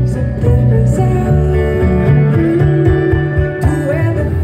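A live band playing a country-style tune on guitars, upright bass and fiddle, with a hand drum, and a strong bass line underneath.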